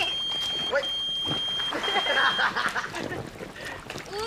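Mobile phone ringing or beeping: a steady high electronic tone repeating in roughly one-second beeps with short gaps, stopping about two and a half seconds in.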